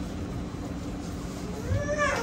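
Steady low hum of an electric canal cruise boat underway. Near the end a person's voice rises in pitch.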